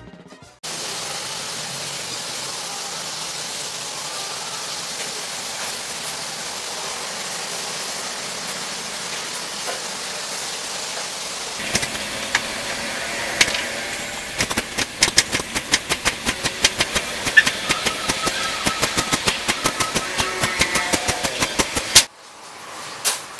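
Kitchen knife chopping vegetables on a cutting board: a few scattered cuts about halfway in, then fast even chopping at about four strokes a second. A steady rushing background noise runs underneath throughout, alone in the first half.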